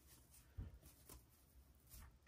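Near silence, with a couple of faint rustles of burlap and a pipe cleaner being handled as the pipe cleaner is wrapped around a scrunched burlap petal.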